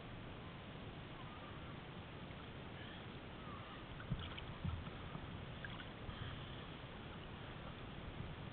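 Low, steady wash of sea water and small waves around a camera held at water level, with a couple of faint knocks a little after four seconds in.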